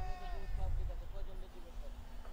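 Players shouting on a football pitch: a drawn-out call right at the start, then a few shorter shouts, over a low rumble.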